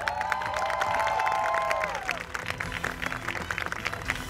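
A group applauding, dense clapping throughout, with several voices cheering in long rising-and-falling calls during the first two seconds.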